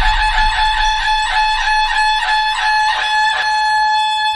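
Instrumental music: a steady, held high tone under a run of plucked string notes, about three a second.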